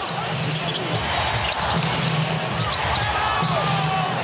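Steady basketball arena crowd noise during live play, with a ball bouncing on the hardwood court.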